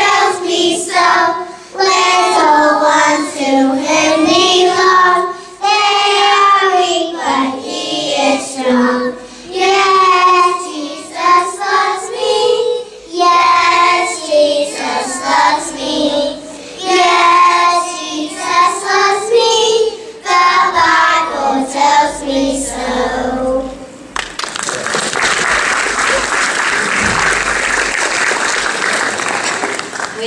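Children's choir singing together in unison until about 24 s in, when the song ends and applause follows for the last several seconds.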